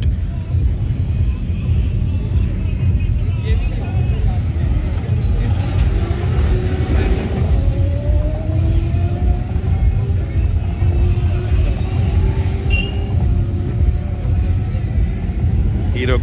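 Hero Xpulse 200 4V single-cylinder dirt bikes running on an off-road track, one engine's pitch rising slowly through the middle. A constant heavy low rumble lies under it.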